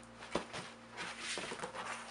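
Cardboard shipping box being opened by hand: one sharp knock of a flap about a third of a second in, then the rustle and scrape of cardboard flaps being folded back.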